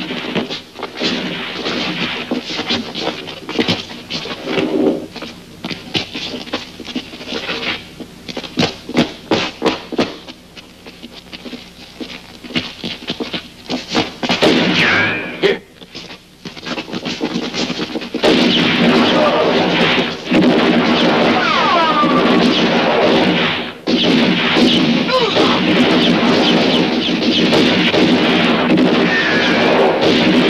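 Western-film gunfight sound effects: repeated gunshots cracking in irregular volleys, with a few whining ricochets. About two-thirds of the way in, a loud music score comes in and carries on under the shooting.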